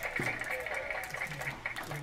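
Foil wrapper of a 2020 Panini Chronicles football card pack crinkling in short crackles as it is worked open by hand. The pack is hard to open.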